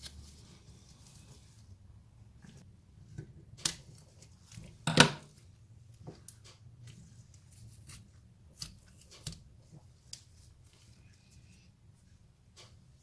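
Scattered light metallic clicks and knocks as steel brake shoes and adjuster parts are handled and seated on a Classic Mini rear drum-brake backplate, the loudest about five seconds in.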